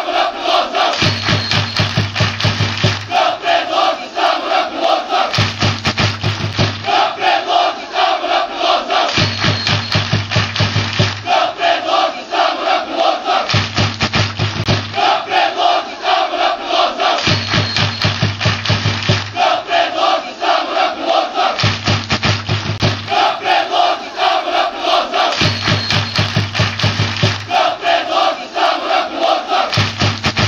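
A music track of a crowd chanting over a fast, steady drumbeat, the same chanted phrase returning about every four seconds.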